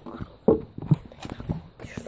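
Hurried footsteps knocking on wooden planks, an irregular run of thuds about three or four a second, with a voice mixed in.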